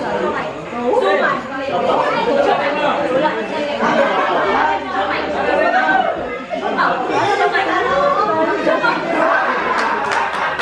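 Many voices talking over one another: lively group chatter in a large room.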